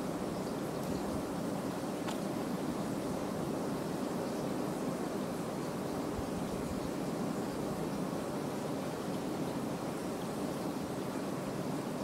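Steady, even background hiss, with a faint click about two seconds in.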